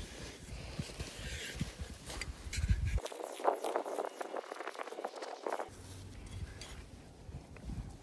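A small hand shovel and hands scooping and scraping loose sand out of a deep hole, in irregular strokes.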